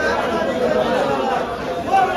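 Background chatter of several people talking at once, with no clear chop of the knife.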